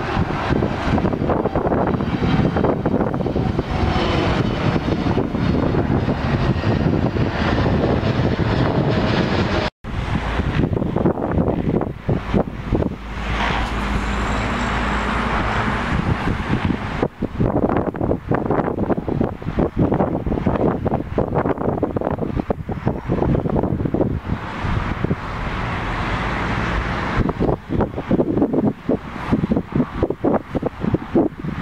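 Twin-engine jet airliner's engines running at climb power as it passes overhead after takeoff. After a cut about ten seconds in, jet noise from farther off, with wind buffeting the microphone.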